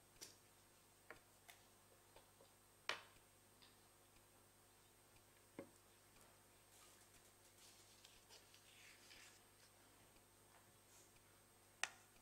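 Near silence: quiet room tone with a scattering of small clicks and taps, the loudest about three seconds in and another just before the end, and faint rustling in the middle.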